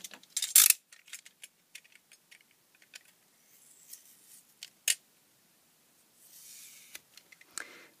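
Light clicks and taps of a small plastic charger case being handled, with a sticker label scraped at and peeled off it by a small plastic tool. There is a sharper click about half a second in and another near five seconds, and two short soft scraping rustles in between.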